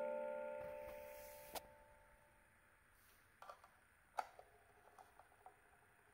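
Cylinder music box's plucked steel comb notes ringing out and fading away over about two seconds, followed by a few faint, separate clicks.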